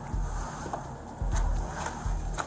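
Body-worn camera microphone picking up handling and clothing rustle: low rumbles with a few light clicks. This comes as the officer takes hold of a handcuffed woman's arm and helps her out of a police SUV's back seat.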